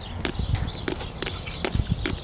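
Ostrich beaks pecking at a wristwatch and bare forearm: a quick, uneven series of sharp taps and clicks, about eight in two seconds.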